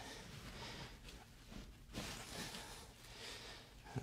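Quiet room tone with faint soft movement noise, swelling slightly about two seconds in; no distinct joint crack stands out.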